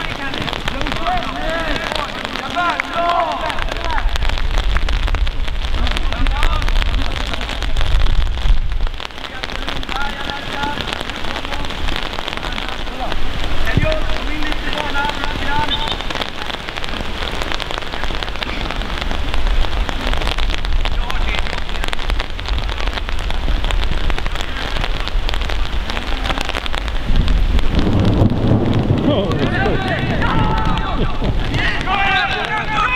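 Steady hiss of rain falling on and around the microphone, with a low rumble of wind on the microphone at times and faint distant shouts now and then.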